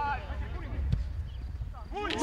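Players' shouts and calls from across a football pitch, a held call fading out at the start and fainter voices after, over a constant low rumble, with a single dull thud about a second in.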